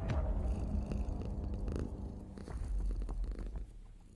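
Logo-sting sound effect: a sudden hit with a falling sweep, then a low, pulsing cat-like purr that fades away near the end.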